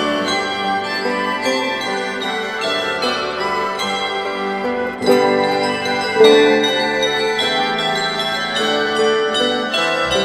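An ensemble of tuned metal percussion mounted on wooden boxes, struck with wooden mallets, playing a pastoral melody in many overlapping ringing notes. Louder accented strikes come about halfway through.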